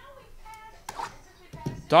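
Faint voices in the background with a single light click just under a second in, then a man starts speaking loudly near the end.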